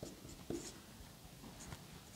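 Marker pen writing on a whiteboard: a few short, faint strokes, the clearest about half a second in.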